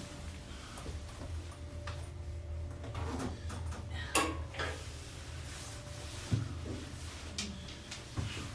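A steady low hum inside an elevator cab, broken by several light clicks and knocks, the loudest a sharp knock about four seconds in.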